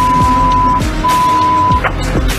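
Censor bleeps covering a race driver's swearing on team radio: a steady high beep, a short break just under a second in, then a second beep that stops shortly before the end. Music and race-car noise play underneath.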